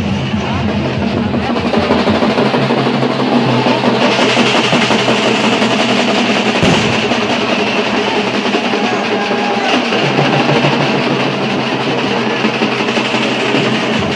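A group of drummers beating large double-headed drums with sticks in a loud, continuous, fast rhythm.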